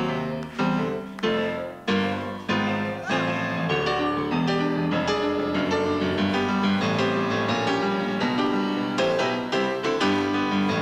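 Live rock band recording led by piano: chords struck about every two-thirds of a second and left to ring, then denser, steadier playing from about four seconds in.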